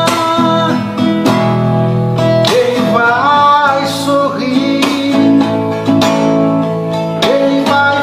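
Acoustic guitar being strummed, with a man's voice holding long sung notes near the start, around the middle and near the end.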